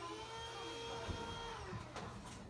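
Door hinge creaking as the door is swung: one drawn-out creak that slides up at the start, holds steady, and slides down again near the end.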